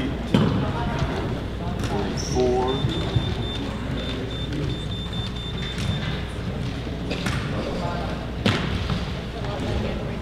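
Large-gym ambience with scattered background voices and occasional thuds and knocks. A run of short, high-pitched electronic beeps, about three a second, lasts a few seconds in the middle.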